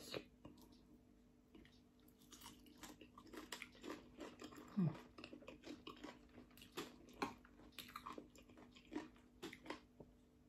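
A person chewing a mouthful of raw wild greens and papaya salad: faint, irregular wet clicks and crunches, with one short, louder low throat sound about halfway through.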